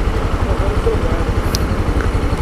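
Honda CB 300's single-cylinder four-stroke engine idling steadily with an even, low pulsing beat while the motorcycle stands still.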